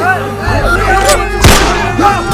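Dramatic trailer soundtrack: music under shouting voices, with a single loud gunshot about one and a half seconds in.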